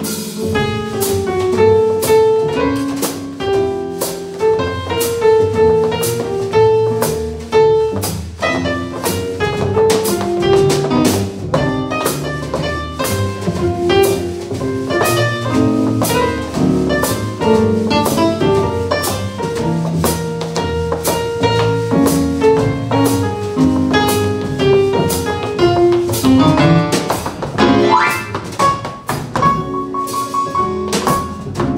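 A jazz trio of digital stage piano, upright double bass and drum kit playing an instrumental tune with no vocals, the piano carrying the melody over a steady beat of cymbal and drum strokes.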